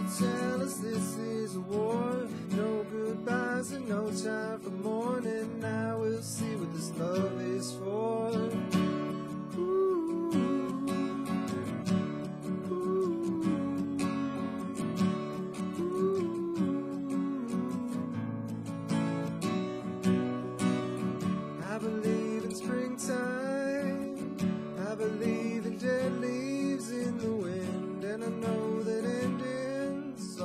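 Acoustic guitar with a capo, strummed steadily through an instrumental passage of the song.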